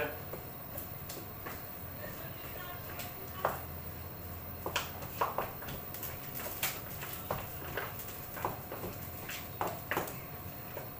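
A spoon scraping and knocking against a dish while raw chicken pieces are stirred with seasoning powder: soft, irregular clicks and scrapes, about one to three a second.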